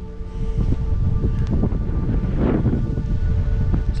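Wind buffeting the microphone with a loud, uneven rumble, over quiet background music of held notes.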